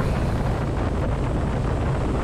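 Harley-Davidson Road Glide's Milwaukee-Eight 107 V-twin running at a steady cruise with an even, unchanging note, under a steady rush of wind and road noise.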